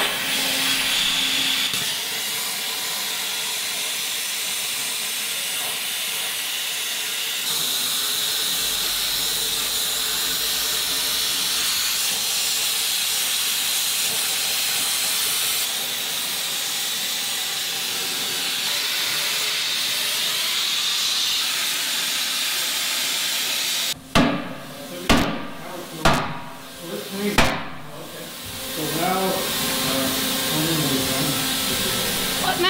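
Plasma cutter hissing steadily as it cuts through a steel frame cross member. After about 24 seconds the cutting stops and four sharp, loud bangs follow, about a second apart.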